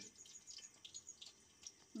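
Faint, scattered crackling of chicken pakoras frying in hot oil under a closed stainless steel lid.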